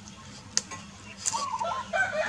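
A chicken clucking, a short run of calls in the second half, with one sharp click about half a second in.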